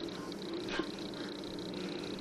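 Baby making a faint, brief vocal sound about three quarters of a second in, over quiet room tone with a steady high hum.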